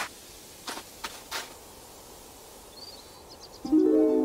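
Soundtrack music: after a quiet stretch with a couple of brief soft noises about a second in and faint high chirps around three seconds, a sustained chord of several held notes swells in near the end.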